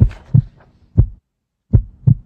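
Four dull, low thumps, loud and irregularly spaced, with half a second of dead silence cutting in after the third.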